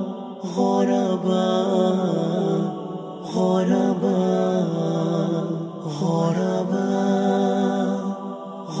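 Opening of a nasheed: wordless layered vocal humming in held chords, each lasting about two to three seconds before the next begins.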